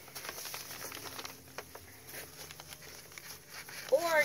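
Brown paper bag rustling and crinkling faintly as it is handled, with scattered small crackles.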